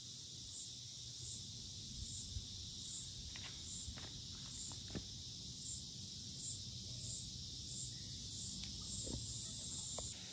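A high-pitched insect chirp repeating about every three-quarters of a second over a steady hiss, with a few faint clicks.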